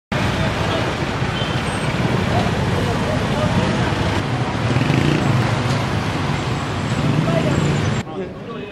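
Steady street traffic noise from a busy road, with indistinct voices mixed in.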